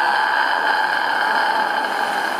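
A loud, steady buzzer tone: one unbroken electronic note that cuts in abruptly and holds at an even pitch and level.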